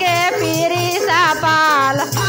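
A woman singing a Hindi Maa bhajan (devotional song to the Mother Goddess) into a microphone, her voice sliding and wavering in ornamented runs over a steady low beat.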